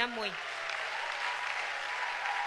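A church congregation applauding with steady, even clapping.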